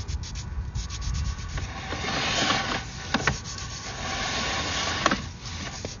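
Sewer inspection camera's push cable being pulled back through the drain line: a steady rubbing and scraping with a few sharp clicks.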